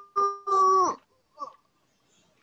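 A high, child-like voice singing or calling in a few drawn-out syllables held on one steady pitch, ending in a falling note about a second in.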